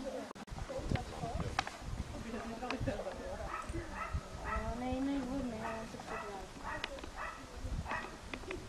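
A dog barking repeatedly over people talking in the background, the barks coming in a quick run through the second half.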